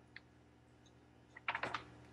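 Faint clicks from a glass mug being handled at a pulpit microphone: one light tick just after the start, then a quick cluster of several clicks about one and a half seconds in.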